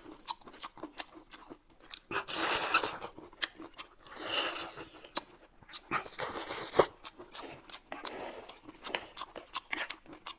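Close-miked eating: noodles slurped in about four long bursts, with chewing and crisp bites and mouth clicks between them.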